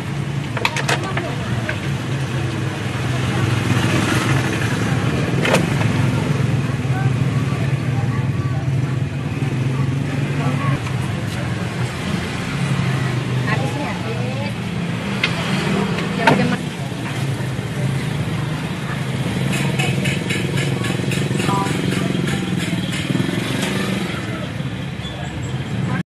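Busy roadside ambience: a steady motor-vehicle engine hum with indistinct voices, scattered clicks and knocks, and a run of quick, evenly spaced ticks near the end.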